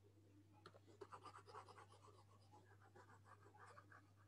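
Faint scratching and quick light taps of a stylus on a tablet screen, clustered from about a second in to near the end, over a steady low electrical hum.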